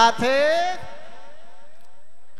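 A man's voice through microphones drawing out one long note that rises in pitch, then trails off in a fading echo for more than a second.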